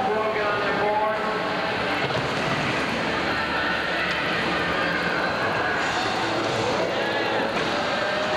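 Skateboard wheels rumbling on a wooden vert ramp, with crowd voices and chatter in a large echoing hall.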